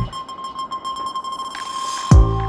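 A break in the background music: the drums stop and a single steady high electronic tone holds, with a hiss that swells near the end.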